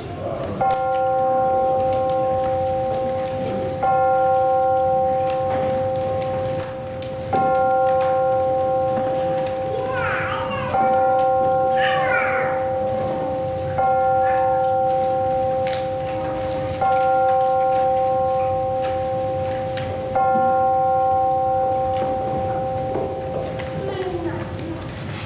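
A bell tolling seven times, one strike about every three and a half seconds, each stroke ringing on until the next.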